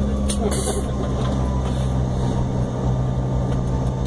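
Airliner's jet engines running at taxi idle, a steady low hum heard inside the passenger cabin, with a couple of brief clicks early on.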